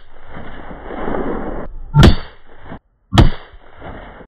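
North American Arms Sidewinder mini revolver firing .22 LR rounds: two sharp shots about a second apart, the first about two seconds in. A steady rushing noise fills the gaps between shots.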